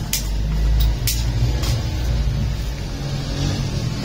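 A few sharp clicks and knocks from a metal tripod light stand being handled and its sections loosened, three in the first two seconds, over a steady low rumble.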